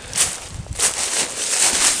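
Dry fallen leaves crunching and rustling underfoot in several uneven surges as someone steps and shifts through the leaf litter.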